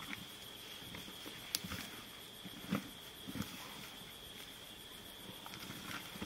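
Steady high insect chirring, typical of crickets at night, with a few scattered knocks and soft crunching thuds from a spotted hyena and a Nile crocodile feeding at a carcass: a sharp click about a second and a half in, then soft thuds near the middle.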